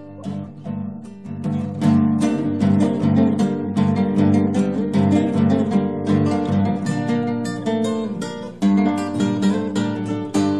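Recorded Argentine folk music: the instrumental introduction of a chacarera on acoustic guitar, strummed in a steady rhythm, starting softly and filling out about two seconds in.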